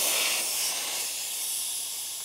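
Air hissing steadily out of a road bike tyre's valve as the valve is held open to let the air out, the sound slowly weakening as the pressure drops.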